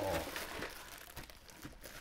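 Clear plastic bag wrapping a vinyl figure crinkling as it is handled and lifted out of its box, fading and growing quieter toward the end.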